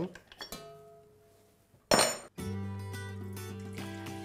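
Metal clinks of an attachment being fitted to a stand mixer over its stainless steel bowl, then one loud, sharp metallic clank with a ringing tail about two seconds in. Steady background music starts right after the clank.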